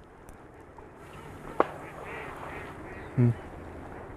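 A few faint duck quacks over quiet marsh background, with a single sharp click about a second and a half in and a brief low sound near the end.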